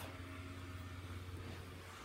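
Small electric blower fan of an inflatable Christmas penguin running with a steady low hum.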